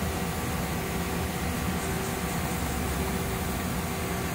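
Mazak Integrex 650 mill-turn machine running at rest, a steady hum with a few low even tones over a hiss, while its tool head is jogged slowly toward the chuck face.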